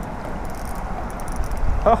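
Spinning reel being cranked against a hooked fish, giving faint quick metallic ticking and rattling, over a steady low rumble of wind on the microphone. A man's voice exclaims near the end.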